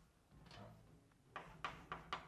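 Chalk clicking against a blackboard as characters are written: about three sharp taps in the last part, over faint room hum.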